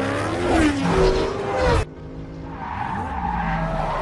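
Supercar engines revving hard at speed, their pitch sweeping up and down. A little under two seconds in the sound cuts abruptly to a quieter stretch of engine sound.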